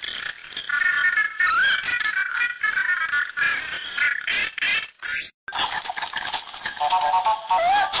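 A SpongeBob clip's audio heavily altered by editing effects: shifted high in pitch and stacked in several overlapping copies, so it sounds squeaky and chorus-like. It cuts out briefly about five seconds in and starts over at a clearly lower pitch, the next effect in the series.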